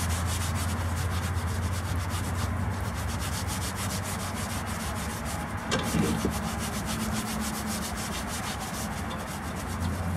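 Rusted cast iron Dutch oven being scrubbed by hand while wet, its vinegar-loosened rust rubbed off in quick back-and-forth strokes. There is a single knock about six seconds in.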